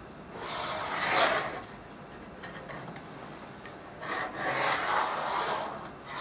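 Pen scratching along a pine board, tracing the outline of a sword blade, in two drawn-out strokes about a second and two seconds long, with a few faint ticks between them.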